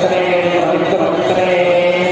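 Priests chanting Sanskrit mantras in a steady, continuous drone during a homa (fire ritual).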